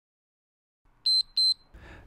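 Interval timer beeping twice, two short high beeps at one steady pitch about a second in, marking the end of a 35-second work interval.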